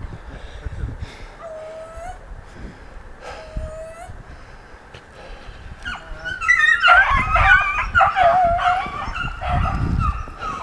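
Beagles vocalising: a dog whines twice, then from about six seconds in several dogs break into loud, overlapping yelps and bays.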